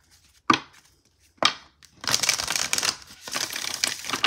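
A tarot deck being shuffled by hand: two sharp card clacks in the first second and a half, then a rapid rustling shuffle about two seconds in that lasts about a second, and a shorter one near the end.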